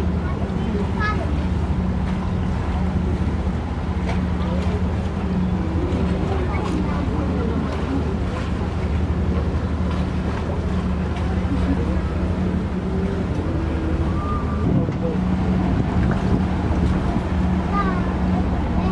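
A passenger boat's engine running with a steady low drone as the boat moves through the water, with voices talking faintly over it.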